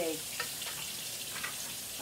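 Food sautéing in a pan, a steady sizzle with a couple of faint clicks as more food is pushed in off a cutting board.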